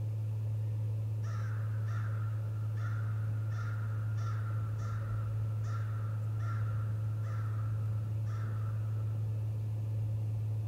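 A crow cawing about ten times in a steady run of short harsh calls, a little under a second apart, starting about a second in and stopping after about eight seconds. A steady low electrical hum runs underneath.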